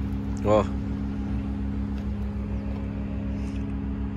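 Caterpillar 236D skid steer loader's diesel engine running steadily: an even low hum with a fast, regular throb beneath it.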